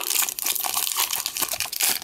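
Foil wrapper of a Pokémon trading card booster pack crinkling and tearing as it is pulled open by hand, a dense run of small crackles.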